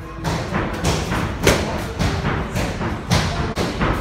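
Gloved punches and kicks landing during light kickboxing sparring: a quick, irregular run of thuds against gloves, arms and shin guards, over background music.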